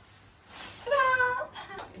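A young woman's voice: one high, drawn-out vocal sound lasting about a second, starting about half a second in and dipping at its end, followed by a few faint clicks.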